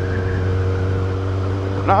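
Kawasaki Ninja 1000SX inline-four engine running at a steady pitch while the motorcycle cruises, under a steady hiss of wind and road noise.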